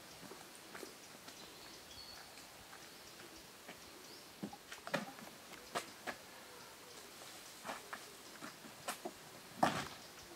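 Scattered clicks and knocks of boat-trailer gear being handled, irregular and sharp, the loudest one near the end.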